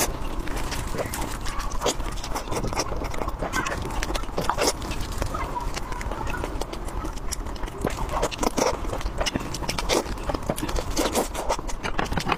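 Close-miked eating sounds: wet chewing and lip smacking with many quick mouth clicks, running on without a break.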